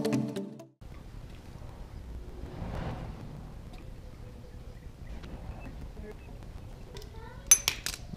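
Background music cuts off within the first second. Then come faint handling sounds and low room noise while gear oil is poured from a bottle into a Harley-Davidson Sportster's primary chaincase. Near the end there is a sharp double clink.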